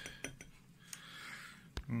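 Handling noise from a telescope in its wooden case: a few light clicks, a faint rustle of bubble wrap, and one sharper click near the end.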